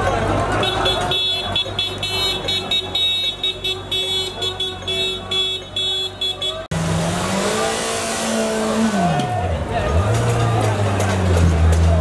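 A ringing alarm pulses rapidly over street noise for the first half. After a sudden cut, a vehicle engine rises and falls in pitch as it revs.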